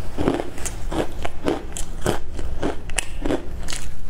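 Chewing crisp broccoli florets close to the microphone: a run of sharp crunches, about three a second.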